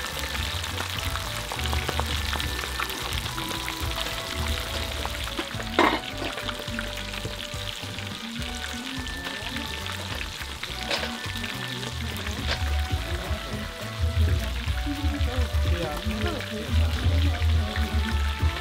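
Whole fish deep-frying in bubbling oil in a cast-iron pan over a wood fire, a steady sizzle. A single sharp knock about six seconds in, with a couple of lighter clicks later.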